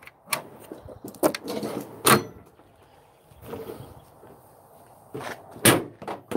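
Steel tool cart drawer sliding shut, with a series of metal clacks and knocks; the sharpest come about two seconds in and near the end.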